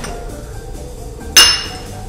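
A porcelain espresso cup set down on its saucer: a single sharp clink with a brief high ring, about a second and a half in.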